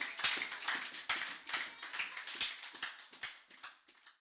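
Congregation applauding: a dense patter of hand claps that dies down steadily and fades out at the end.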